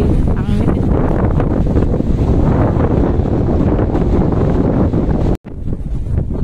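Wind buffeting the microphone: a loud, steady noise weighted to the low end, breaking off abruptly about five seconds in.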